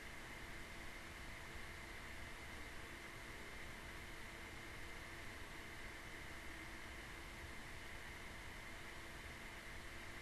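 Faint, steady hiss of an open microphone and room tone, with no distinct sound events.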